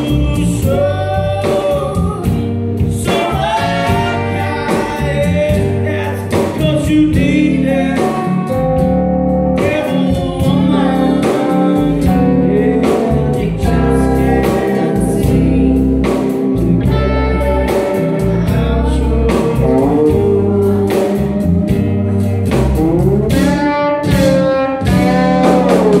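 Live rock band playing: a woman singing over acoustic and electric guitars, electric bass, keyboard and drums.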